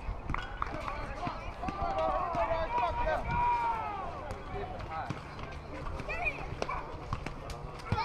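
Distant voices calling and shouting across a youth baseball field, with several drawn-out rising-and-falling yells in the middle. A single sharp smack comes right at the end as the pitch arrives at the plate.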